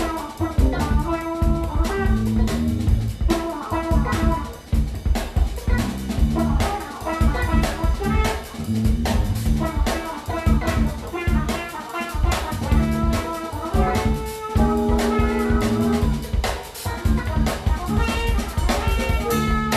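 Live band playing: a drum kit keeping a busy, steady beat under electric bass and guitar, with trumpet and saxophone playing held notes over the top.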